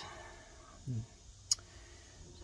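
Mostly quiet, with a short low "hm" from a man about a second in and one sharp light click about half a second later, from handling a rolled steel ring on the workbench.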